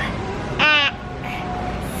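A young girl's voice drawing out one syllable, about half a second in, as she sounds out a word from a food label, over steady background noise.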